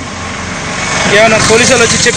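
A lorry's diesel engine idling with a fast, even pulse, and a man's voice starts talking loudly over it about a second in.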